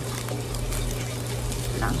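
Steady background hiss with a low, steady hum beneath it. A short spoken word comes near the end.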